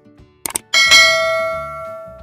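A mouse-click sound effect, then a bell ding that rings and slowly fades: the notification-bell sound of a subscribe-button animation.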